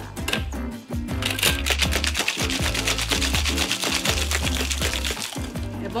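Ice rattling hard and fast in a metal cocktail shaker as a gin, lime, sugar and mint cocktail is shaken. The shaking starts about a second in and stops near the end. It is shaken well to dissolve the sugar and dilute the drink.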